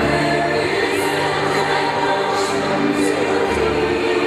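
Music track of a choir singing, with sustained notes held throughout.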